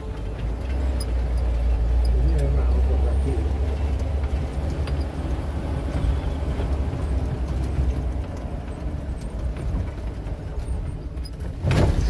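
Off-road jeep heard from inside the cabin while driving a rough dirt track: a steady low engine and road rumble, with faint voices under it. A louder sound cuts in just before the end.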